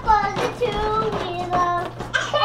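A toddler singing without words, in drawn-out, sliding notes.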